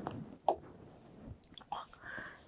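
Quiet breaths and faint mouth sounds from a woman pausing between sentences, with a soft click about half a second in.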